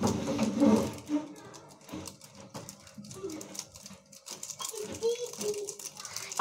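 A Maggi masala sachet is torn and shaken over a pan, with a crinkling rustle loudest in the first second, and low, indistinct voices in the background.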